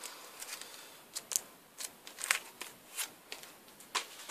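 A shrink-wrapped vinyl LP sleeve being handled and put down: a scattering of short plastic crinkles and taps.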